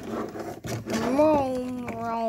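A person's voice holding one long, steady vocal note, a hum or drawn-out "uhh", starting about a second in after soft noise from the toy figure being handled.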